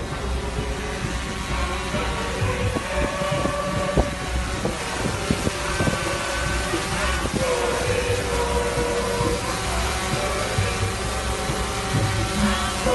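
A group of people singing slowly, with long held notes, over a steady low wind rumble on the microphone. A few sharp knocks sound around the middle.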